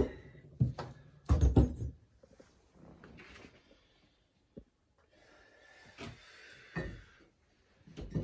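Broken red clay bricks dropped into a plastic crate, clunking against the crate and each other: three loud knocks in the first two seconds, then a few fainter knocks and scuffling.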